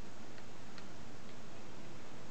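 A few faint, light metallic clicks as an angle grinder's gear head, with its spindle and bevel gear, is turned over in the hands. A steady background hiss runs underneath.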